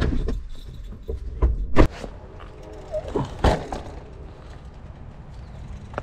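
Several separate knocks and thuds of things being handled, the loudest about two seconds in and again about three and a half seconds in.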